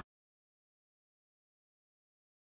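Silence: the sound track drops to dead silence, with no pouring or cooking sound heard.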